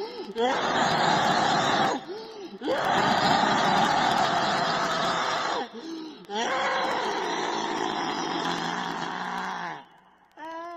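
Harsh, raspy voice-like sound effect resembling wheezing laughter, in three long stretches with brief gaps between them, each opening with a short swoop in pitch.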